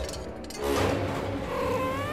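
A cat meows: one drawn-out call that bends up and down over the second half, over film-score music.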